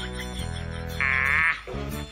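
Background music with sustained low notes; about a second in, a loud, quavering high-pitched cry lasts about half a second.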